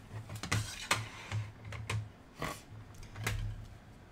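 Hard plastic PSA graded-card slabs clicking and clacking against one another as they are handled and lifted from a stack: a series of light, irregular clicks, about two a second.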